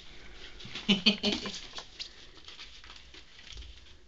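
Light, scattered scratching and rustling as ferrets scamper over a bed sheet and newspaper, with a brief burst of a person's voice or laughter about a second in.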